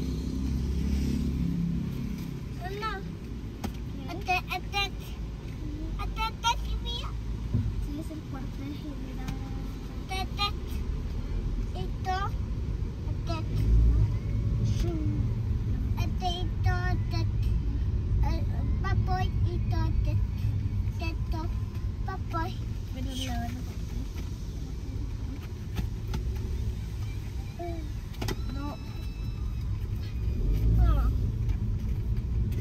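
Inside a moving car: a steady low rumble of engine and road noise, with quiet voices talking on and off in the cabin.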